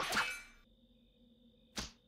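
Cartoon sound effects: a sudden sharp whoosh-like hit that dies away within about half a second, then a second brief swish just before the end, with near silence between.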